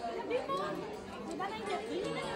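Indistinct background chatter: several women's voices talking at a table, none standing out.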